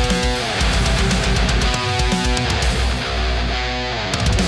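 Heavy high-gain distorted electric guitar riff on a Balaguer Hyperion with Fishman Fluence Modern pickups, played straight into an EVH 5150 III 50-watt EL34 tube head with no boost pedal. Fast chugged low notes are broken by sustained ringing chords: one at the start, one about two seconds in, and one near the end.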